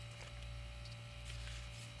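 Low steady hum with faint rustling from a paper photocopy mask being lifted off the painting.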